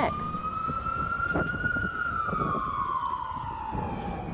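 An emergency vehicle siren wailing: its pitch rises slightly, then falls in one long, slow slide over a few seconds.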